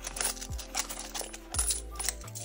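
Australian coins clinking and jingling as they are fished out of a wallet's zippered coin pouch, with a couple of soft thumps from the wallet being handled.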